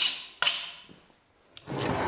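Metal blade of a red-handled hand scraper drawn along an old, weathered oak beam in two short strokes, each starting sharply and fading within about half a second, with a light click near the end.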